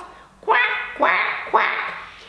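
A woman's voice imitating a duck, three nasal quacks in a row about half a second apart, the last one softer.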